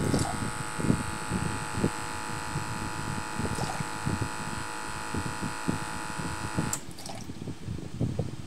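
Small aquarium air pump running with a steady buzzing hum, then cutting off with a click near the end. Under it, liquid runs and splashes into a 3D-printed tipping bucket.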